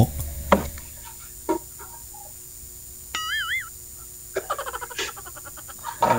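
Scattered knocks, like someone pounding, coming through a video call: about five at irregular intervals. A short warbling chirp sounds about three seconds in.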